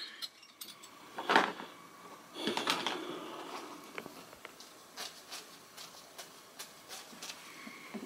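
Handling noise from a handheld camera being moved about: irregular rustles, clicks and knocks, with a louder rustle about a second and a half in and a longer one near the middle.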